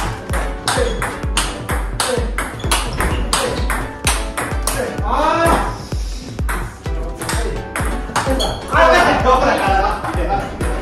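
Table tennis forehand drive rally: the celluloid-type ball clicking sharply off the bats and the table in quick succession. Background music with a steady bass beat plays underneath.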